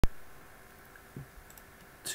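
A single sharp computer mouse click right at the start, then quiet room tone with a faint knock about a second in.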